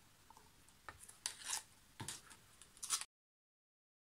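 Plastic cups handled while paint is poured from one cup into another: a few light knocks and rustles in short bursts, then the sound cuts out to dead silence about three seconds in.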